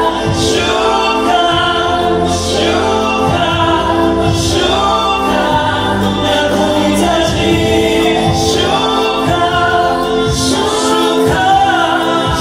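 Live gospel worship song: a choir of voices singing with a male lead over held chords, with a crash-like accent about every two seconds.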